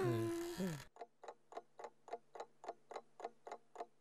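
A long cartoon yawn trails off in the first second, then a clock ticks steadily and quietly, about four to five ticks a second.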